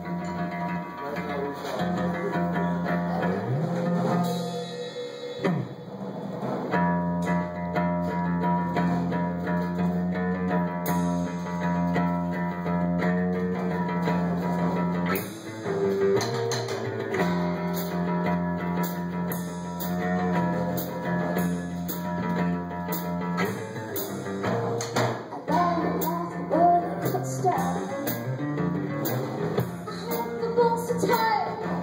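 Live acoustic guitar and drum kit playing a song, with cymbal strikes growing busier from about halfway; a woman's singing voice comes in near the end.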